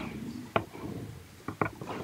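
A pause in a quiet room with three short, sharp clicks: one about half a second in and two close together near the end.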